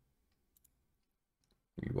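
Two faint clicks of a computer mouse about half a second in, in a quiet room; a man starts speaking near the end.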